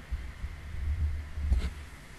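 Low, muffled rumbling thumps picked up by a close desk microphone, with a sharper thump about one and a half seconds in; handling or bumping noise on the mic.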